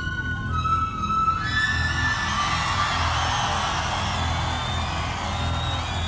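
Live concert sound: a repeating bass pulse and a few held synthesizer notes, with a stadium crowd cheering and whooping that swells about a second and a half in.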